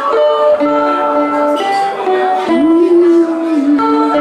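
Live acoustic band music: strummed acoustic guitar under long held melody notes from a keyboard instrument, the slow opening of a song.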